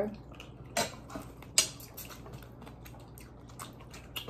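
A few short, sharp clinks of a fork against a ceramic dinner plate during a meal, the loudest about a second and a half in, with smaller taps between.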